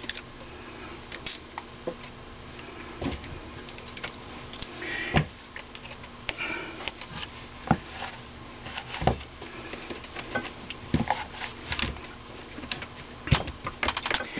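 Irregular light clicks and knocks of steel parts handled on a workbench as a Wico EK magneto is set onto the iron pole pieces of a magnet charger.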